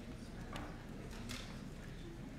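Room tone with faint, indistinct voices in the background and two sharp clicks, about half a second in and again a little past a second.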